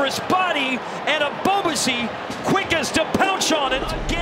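Speech only: television commentators' voices talking, with a low hum coming in near the end.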